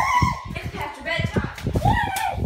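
Two high-pitched wordless vocal calls that rise and fall, one at the start and one near the end, over low thumps and rustling.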